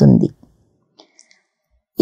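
A woman's reading voice ends a phrase just after the start. A pause follows, with a few faint short clicks about a second in, and the voice resumes at the very end.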